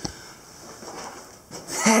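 A short knock right at the start, then a faint steady hiss, and a man's voice saying one word near the end.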